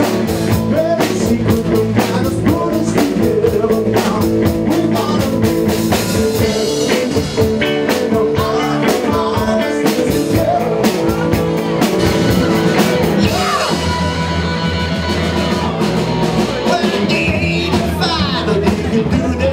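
A live 1970s glam rock tribute band playing a rock song, with electric guitars, bass and a steady drum kit beat, and a man singing into the microphone.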